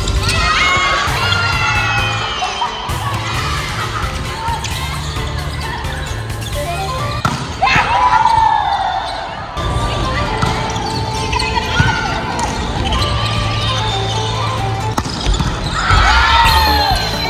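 Volleyball rally in a large gymnasium: the ball is struck and bounces off the hardwood floor with sharp slaps, and players shout calls, loudest just before the point ends, about eight seconds in. Background music with a steady bass line plays underneath.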